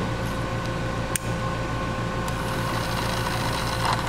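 A single sharp click of a hardware-store toggle switch about a second in, over a steady room hum. From a little past two seconds a faint high whir sets in: the toy car's small electric motor turning its wheels on power from the glucose fuel cells.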